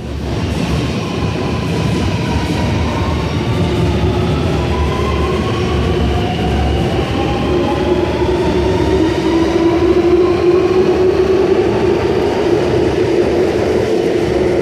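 Sydney Metro Alstom Metropolis electric train departing an underground platform. The traction motors whine in tones that glide up and down over a steady rumble of wheels, and a hum grows louder toward the end as it pulls away.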